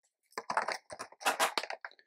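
A quick, irregular run of light clicks and rustles, like small hard objects being handled, lasting about a second and a half.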